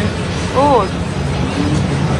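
Steady low rumble of road traffic, with one short spoken sound from a voice about half a second in.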